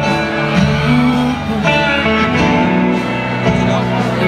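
Live band playing a song: electric guitar and full band with a man singing into the microphone.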